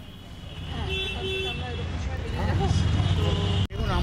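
Outdoor street ambience: people talking in the background over a low rumble of road traffic that grows slightly louder, with a brief dropout near the end.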